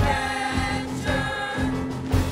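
Boys' show choir singing in harmony over an accompaniment with a steady low beat.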